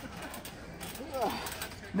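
A faint short voice about a second in, over low background noise.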